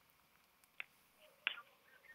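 A quiet pause holding two faint, short clicks about two-thirds of a second apart.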